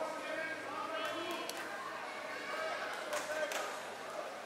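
Several people talking and calling out in a sports hall, too mixed to make out words, with a few sharp knocks at about a second and a half in and again a little after three seconds.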